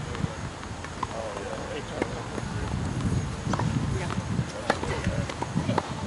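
Tennis ball being struck and bouncing on a hard court, sharp knocks roughly once a second, over a steady low wind rumble on the microphone.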